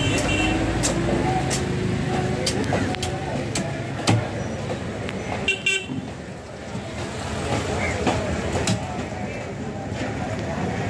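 Knife chopping and cutting through a black trevally on a wooden chopping block, with irregular sharp knocks, one louder about four seconds in. Voices and traffic run underneath, with a short high beep just past halfway.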